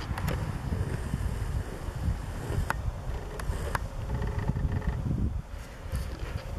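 Wind buffeting the camera microphone outdoors, an uneven low rumble, with a few faint clicks around the middle.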